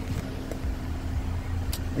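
Mercedes-Benz C250's engine idling, a steady low hum heard from inside the cabin, with a single click near the end.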